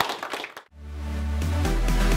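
Room sound fades out in the first half-second. Electronic outro music then fades in with a deep bass tone, and a steady beat comes in about one and a half seconds in.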